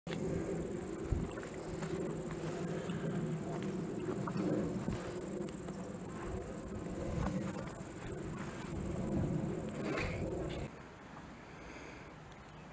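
Insects calling in a steady high-pitched hiss over a low background murmur; the sound drops sharply to a much quieter level about ten and a half seconds in.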